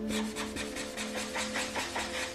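Felt-tip marker scratching across paper in quick back-and-forth colouring strokes, several a second.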